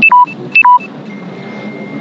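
Two loud electronic beep sequences about half a second apart, each a quick pair of a high tone and a lower tone, followed by a faint steady high tone.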